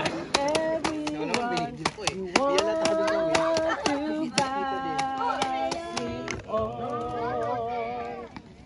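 People singing, holding long wavering notes, with quick sharp hand claps keeping a beat.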